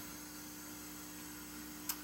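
Steady electrical mains hum with a faint hiss, as room and recording background in a pause with no speech; a single short click sounds just before the end.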